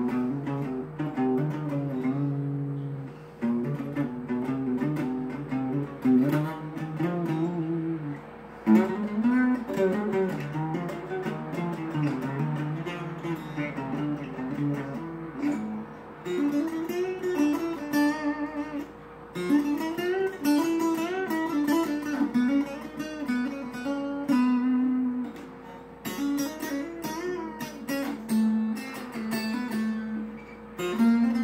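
Acoustic guitar played solo: a continuous instrumental passage of changing notes and chords, with one note ringing steadily underneath.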